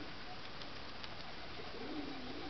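Faint cooing of domestic pigeons over a steady background hiss.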